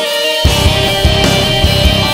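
Instrumental rock music with no vocals. The bass end drops out for the first half second, then the full band comes back in with a steady beat.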